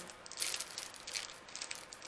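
Packaging being opened by hand, rustling and crinkling in a run of short, irregular scratchy crackles.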